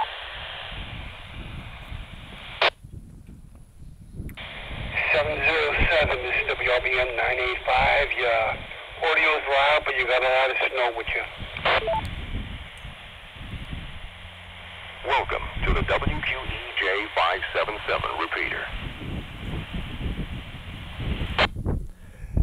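A man's voice coming back over a GMRS repeater through a handheld radio's small speaker. It sounds thin and narrow, with a steady hiss of static under it, in two stretches of talk with a pause between them.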